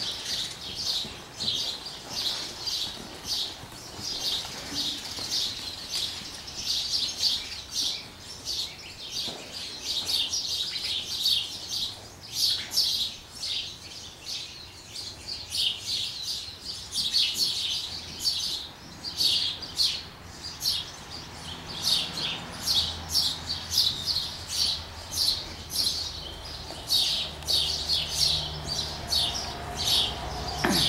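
Small birds chirping, a continuous run of short, high chirps, several a second.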